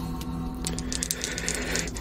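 Dice rolled for a Call of Cthulhu POW check: a quick run of small clicks and clatters from about a third of the way in, over a steady low music drone.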